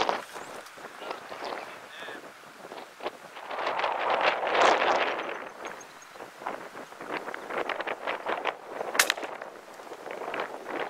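Footsteps crunching and brushing through dry grass and brush, with a louder stretch of rustling about four to five seconds in and a single sharp click near the end.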